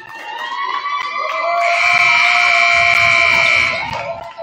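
Gym scoreboard horn sounding as the warm-up clock runs out to zero. It is a loud, steady buzz that swells to full strength about a second and a half in, holds for about two seconds, then cuts off near the end.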